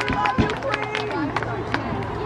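Crowd chatter in a stadium: many voices talking and calling over one another, with scattered short sharp clicks and a steady low hum underneath.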